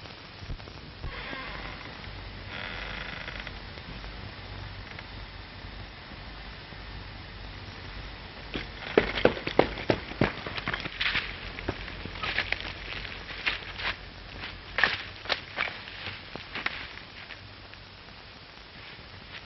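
Pistol shots crack in quick clusters during a gunfight in the dark, starting about halfway through. The first volley is the loudest, and more scattered shots follow.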